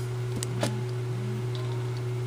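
A steady low hum underneath, with a couple of faint clicks about half a second in as a steel shaft is tried in the centre hole of a small robot-car kit wheel.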